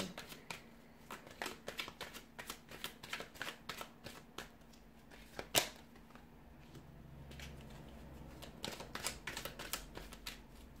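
A Rider-Waite tarot deck being shuffled by hand: a run of light card clicks, with one louder click about halfway through. The clicks thin out briefly, then pick up again near the end.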